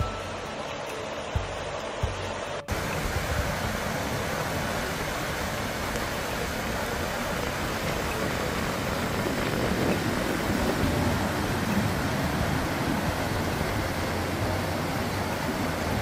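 Fast, muddy floodwater rushing in a torrent: a steady, full rush of noise that cuts in abruptly about three seconds in. Before it comes a quieter wash of water with a couple of faint knocks.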